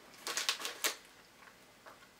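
Plastic snack wrapper crinkling and crackling as it is pulled open by hand, a quick run of crackles in the first second.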